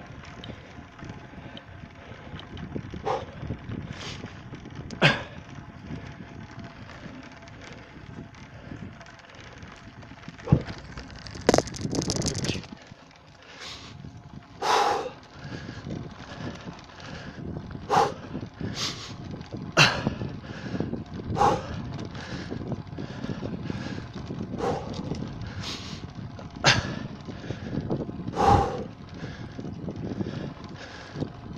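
A bicycle rolling fast over cracked, patched asphalt, with steady tyre and wind noise and a dozen or so sharp, irregular knocks and rattles as it jolts over the cracks; a longer gust of wind noise comes about a third of the way in.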